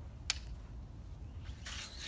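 A heavy swimbait cast on a baitcasting reel: a sharp click, then about a second and a half later a high hiss as the cast goes out, over a low wind rumble on the microphone.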